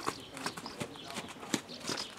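A horse's hooves striking the sand footing of an arena at a trot, about three hoofbeats a second.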